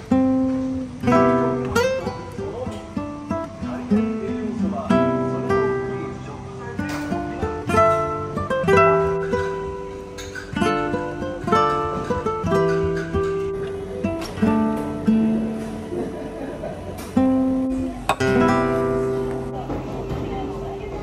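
Background music of solo acoustic guitar, plucked melody notes with occasional strums.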